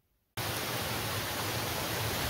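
Silence for about a third of a second, then the steady rush of a cascading creek cuts in abruptly, an even hiss of running water.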